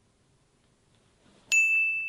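Silence, then about a second and a half in a single high, clear ding sounds out suddenly and holds briefly: an edited-in ding sound effect.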